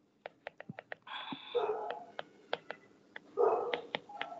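A dog gives three short barks or whines. Between them comes a run of light clicks from a stylus tapping and writing on a tablet's glass screen.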